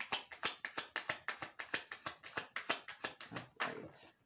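A tarot deck being shuffled by hand, the cards tapping and slapping together about eight times a second. The shuffling stops shortly before the end.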